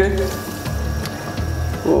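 Last thin trickle of water poured from a glass into an aluminium pressure-cooker pot, tapering off within the first half-second, over soft background music.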